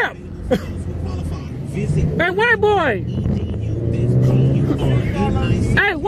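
A car engine running steadily at low revs. Loud shouted calls from people come over it about two seconds in and again near the end.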